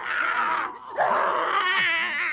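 People yelling and grunting as they grapple with each other in a staged fight. The sound comes in two loud, strained outbursts: one at the start and a second from about a second in, with a brief dip between them.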